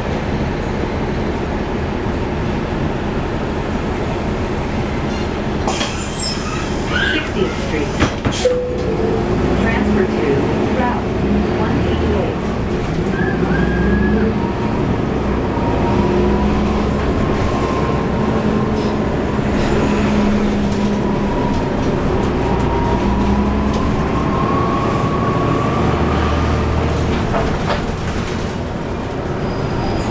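Cabin of a 2011 NABI 40-SFW transit bus in motion: the Cummins ISL9 inline-six diesel engine running with its radiator fan on, over steady road and body noise. A few sharp rattles come between about six and nine seconds in. From about ten seconds in, an engine hum and whine settle in, and the whine slowly rises, then falls near the end.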